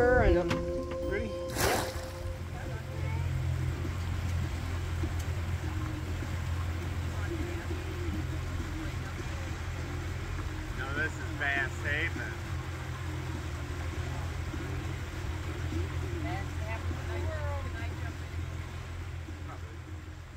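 Boat motor running at a steady low hum while the boat moves through the water. A sharp knock comes about two seconds in, and the hum fades out near the end.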